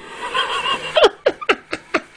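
A person laughing in a quick run of about five short bursts in the second half, each one falling in pitch, after a brief wavering high tone near the start.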